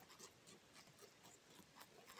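Tobacco hornworm (Manduca sexta) caterpillar chewing a tobacco leaf, picked up by a microphone held against the leaf: faint, irregular crisp clicks, a few each second, as its jaws bite through the leaf.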